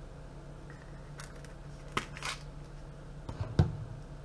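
Garlic powder shaker being handled and shaken over a container of raw chicken wings: a few light clicks and a short rattle near the middle, then a dull thump a little before the end, the loudest sound. A steady low hum sits underneath.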